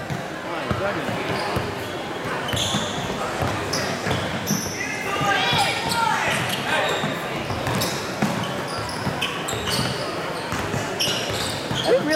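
Gym game sound from a youth basketball game: a basketball bouncing and short high squeaks of sneakers on the hardwood court, over constant chatter and calls from spectators and players in a large echoing hall. One voice is raised in a shout about five to six seconds in.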